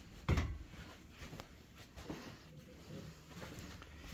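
A loud thump just after the start, then scattered soft knocks and rustles: someone walking across a carpeted room and through a doorway with a handheld phone camera, which picks up handling noise.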